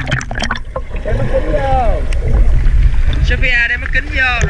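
Pool water sloshing and splashing against a waterproof camera held at the surface, giving a heavy low rumble. A child's voice calls out with a falling pitch about a second and a half in, and voices come again near the end.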